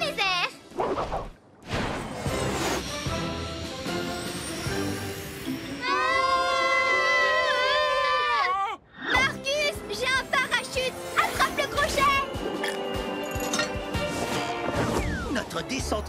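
Cartoon soundtrack: background action music with sound effects, and about six seconds in a long, wavering high-pitched cry lasting some three seconds.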